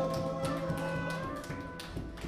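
A soft passage of live Latin band music: held chords fade away while light hand taps on congas go on through the hush.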